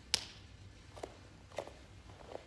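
A single sharp slap as a fist is struck into an open palm in a kung fu salute, followed by two softer footsteps about a second in and near the end.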